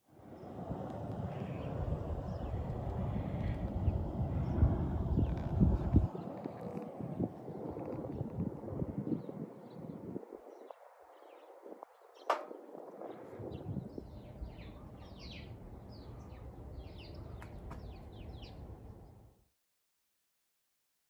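Low rumbling wind noise on the microphone for about the first ten seconds, then a single sharp click, followed by small birds chirping over a fainter wind hiss.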